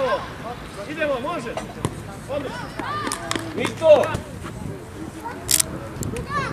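Several voices shouting short calls across an outdoor football pitch during play, with a few short, sharp knocks in between.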